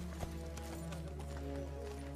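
Horse hooves clopping as a horse is ridden, under a score of steady held tones.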